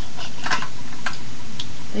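A few light, sharp clicks of plastic makeup cases being handled, over a steady hiss.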